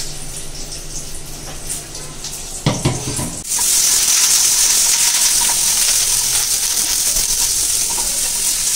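Food frying in hot oil in a kadai, a steady sizzle that turns abruptly loud about three and a half seconds in while a wooden spatula stirs. Before that the frying is quieter, with a brief clatter a little before the loud sizzle begins.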